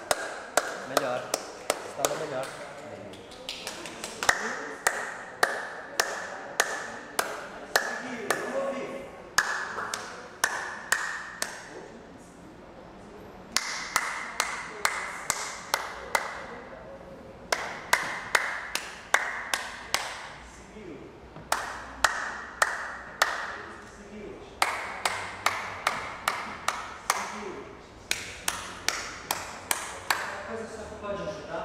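Several people practising hand claps with stretched, pressed fingers, in irregular overlapping runs with a couple of short pauses. Many of the claps have a bright, ringing pitch.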